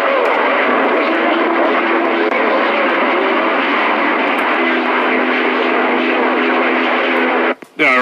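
Stryker CB radio receiving a weak, noisy station: loud, steady static hiss with faint steady humming tones in it. It cuts out briefly near the end as the operator keys up to transmit.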